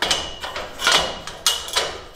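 Steel square tubing of a bedside mounting rig knocking and scraping against the rig's upright and threaded-rod adjuster as it is handled: three metal clanks with a thin ringing.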